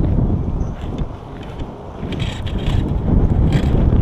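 Wind buffeting the microphone, a loud low rumble that eases for about a second partway through, with a few short clicks from a baitcasting reel being worked.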